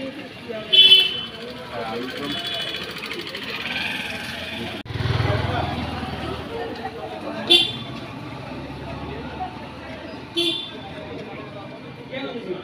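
Street noise with three short, loud vehicle-horn toots: one about a second in, one past the middle and one near the end, over a low traffic rumble.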